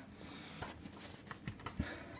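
Faint handling noise from fingers working at a car seat's metal release lever and cable inside the seat-back foam: a few light, scattered clicks and taps.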